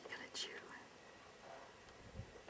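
A person whispering: two short breathy bursts near the start, then quiet.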